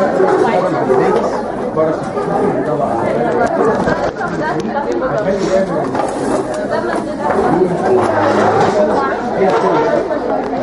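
Many voices talking at once without a break: a room full of people chattering.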